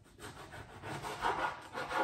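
Large chef's knife sawing through an aubergine on a plastic cutting board: a scraping of the blade through skin and flesh in several strokes, growing louder toward the end.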